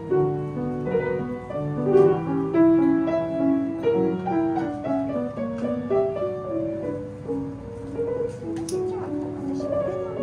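Yamaha grand piano playing a classical piece: a melody of single notes over held lower notes, at an unhurried pace.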